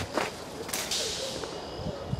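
Footsteps through tall weeds, with leaves and branches swishing against legs and clothing. There are a couple of short snaps near the start and one louder swish about a second in.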